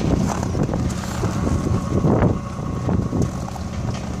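A vehicle engine idling with a steady low hum, with wind buffeting the microphone in irregular gusts.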